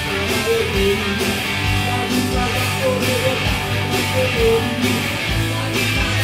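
Rock music played live: electric guitar over a programmed backing track with a steady drum beat, about two hits a second, and held bass notes.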